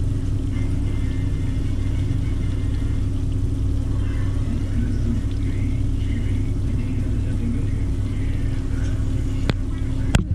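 A steady low hum with faint TV voices behind it, and a sharp click near the end.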